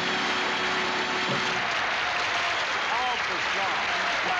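Studio audience applauding steadily, with a held tone under it for the first second and a half and voices rising over it near the end.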